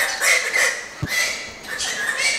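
Galah cockatoo shouting a phrase in its screechy parrot voice, heard as 'Friggin' save the cage!', in a tantrum. A single knock comes about a second in.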